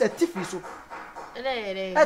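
Conversational speech, then a long drawn-out vocal sound about one and a half seconds in, its pitch dipping and then holding steady.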